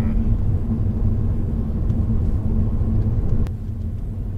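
Honda Odyssey RB3 minivan driving, heard inside the cabin: a steady low rumble of engine and road noise. A brief sharp click comes about three and a half seconds in, after which the rumble is slightly quieter.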